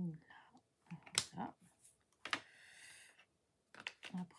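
Small hard clicks, then about a second of rattling as loose rhinestones are jiggled in a plastic tray.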